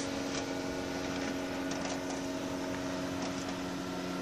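Engine of a motorized hang glider (ULM trike) in flight overhead: a steady drone of even pitch, with a lower note joining in near the end.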